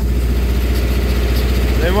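Farm tractor's engine running at a steady, even speed under way, heard from inside the cab with the door open.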